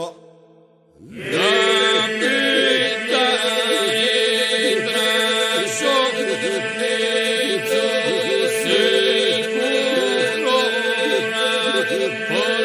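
Albanian Lab folk song sung by a vocal group in the polyphonic style: voices holding a steady drone under ornamented lead lines. It starts after about a second's pause, with the voices entering together.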